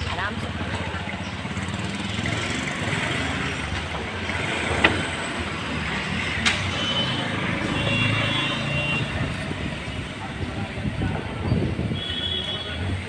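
Street ambience: indistinct voices and traffic noise, with two sharp clicks about five and six and a half seconds in.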